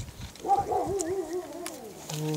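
A dog whining: one wavering cry of about a second and a half, its pitch wobbling rapidly up and down.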